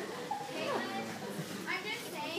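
Faint, indistinct chatter of several voices, children among them, with no clear words.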